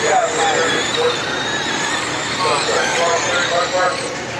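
A pack of 12T Mud Boss RC dirt modified cars racing, their electric motors and drivetrains giving a steady, high-pitched whine that wavers slightly. Background voices are mixed in.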